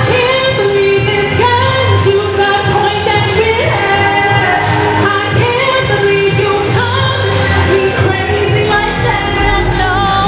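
A female singer performs a contemporary R&B pop song live into a microphone over backing music, her melody gliding between held notes.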